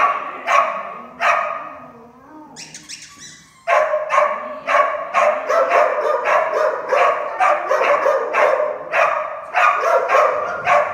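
A dog barking: three barks, a lull of about two seconds with a brief noise, then rapid, repeated barking at about three barks a second.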